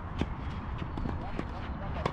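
Tennis rally: sharp knocks of rackets hitting the ball, mixed with players' footsteps on the court, several in two seconds. The clearest knock comes about a fifth of a second in.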